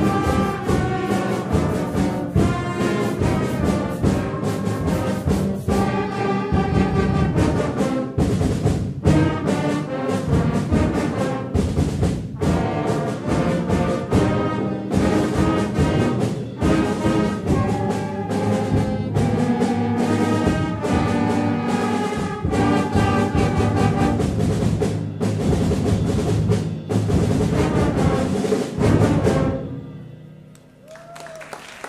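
Junior high school concert band playing: brass, woodwinds and percussion together, with percussion strikes keeping a steady beat under held chords. The piece closes on a final loud chord near the end.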